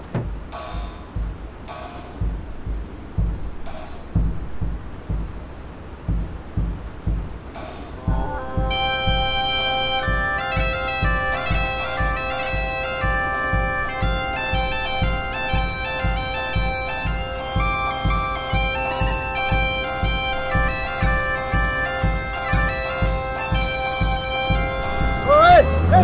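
Bass drum beating a steady rhythm with a few cymbal crashes. About eight seconds in, bagpipes strike in, the drones sounding under the chanter's tune, while the drum keeps the beat.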